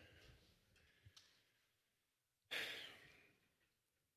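A single audible sigh, a breath out into the microphone, about two and a half seconds in, fading away over about a second, against near silence.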